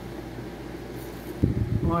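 Room tone with a steady low hum, then a sudden low thump about one and a half seconds in, followed by a woman's short word.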